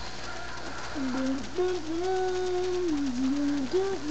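A girl humming a tune to herself, with long held notes stepping up and down in pitch and a short break about a second in.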